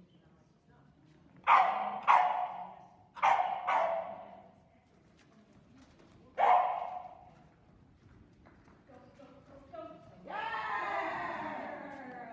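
A small dog barking: five sharp barks, two pairs and then a single one, echoing in a large hall. Near the end comes a longer, drawn-out call.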